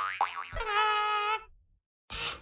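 Cartoon sound effects for an animated logo: a quick springy rising glide, then a steady buzzy held tone lasting about a second that stops about a second and a half in.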